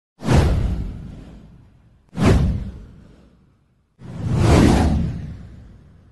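Three whoosh sound effects from an animated title intro, each a rush of noise that fades away over about two seconds. The first two hit suddenly. The third, about four seconds in, swells up before fading.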